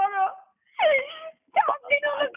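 A high-pitched voice over a phone line, drawn-out and wavering rather than clipped speech, with a falling wail about a second in and two short breaks.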